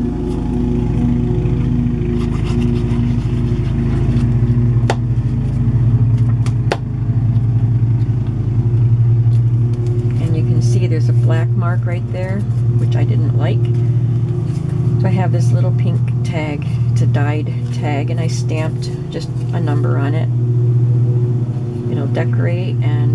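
A loud, steady low hum that runs on unchanged, with two sharp clicks about five and seven seconds in. From about halfway on, an indistinct voice talks in the background.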